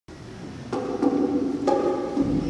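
Opening of a choral arrangement of a Māori song: a drum struck three times, starting under a second in, with steady sustained tones sounding after each strike.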